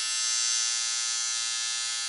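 Tattoo machine buzzing steadily while tattooing skin, one even, high buzz that holds its pitch.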